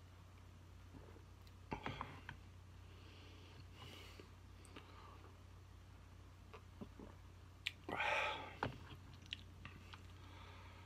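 A man sipping and swallowing beer from a pint glass, with two short breathy mouth sounds, one about two seconds in and a louder one about eight seconds in, and a few light clicks near the end. A steady low hum runs underneath.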